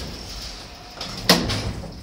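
Bennie lift's automatic sliding doors closing fast: a low running rumble, then one sharp clunk about a second and a half in.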